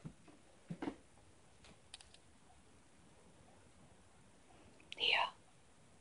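Mostly quiet room with a few faint taps and clicks in the first two seconds, then a brief whisper about five seconds in.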